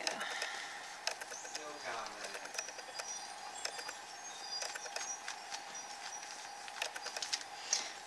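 Paintbrush strokes over a thin paper napkin glued onto a journal page: a run of soft scrapes and small clicks over a faint steady whine.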